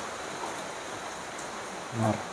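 Steady, even hiss of background noise with no distinct events, in a pause between voices.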